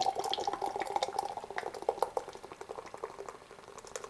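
Nitro porter poured from a can into a stemmed glass chalice: a steady stream of beer into the glass with many small splashes and pops, fading toward the end as the pour finishes.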